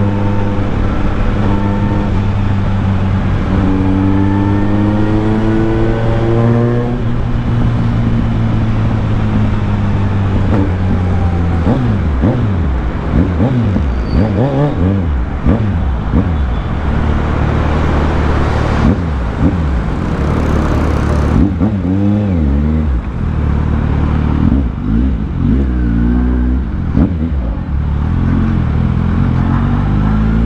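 Kawasaki Z900's 948 cc inline-four engine heard from the rider's seat. It runs steadily, with the revs climbing a few seconds in. From about a third of the way through, the revs swing up and down again and again as the bike slows down.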